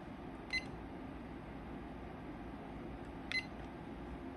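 Two short electronic key beeps from the bench test instruments, about half a second in and again near the end, the second as the power supply's output is switched on. A steady low hum runs underneath.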